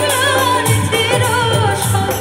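A woman singing a South Asian song live through a PA, backed by keyboard and tabla, the low drum strokes keeping a steady beat under her wavering melody.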